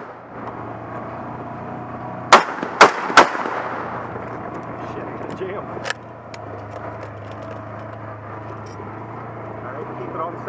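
Three rifle shots from a .308 FAL in quick succession, fired from a moving Polaris side-by-side, about two and a half seconds in, with a fainter sharp report about three seconds later. The side-by-side's engine hums steadily underneath.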